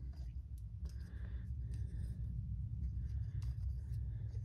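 Steady low rumble of a jet aircraft passing overhead. Over it come faint scraping and small clicks as a tripod screw is turned by hand into the aluminium base plate of a phone mount.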